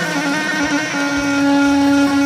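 A yarghoul, a Levantine cane double pipe with a long drone pipe, playing steady reedy held notes over its drone; about halfway through it settles onto a lower sustained note.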